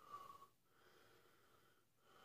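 A man breathing hard through his open mouth against the burn of a Carolina Reaper pepper: two faint, slightly whistling breaths, a short loud one and then a longer one.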